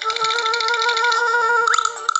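A cartoon sound effect from a children's storybook app: a steady buzzing tone with a fast rattle running through it, and a quick upward slide near the end.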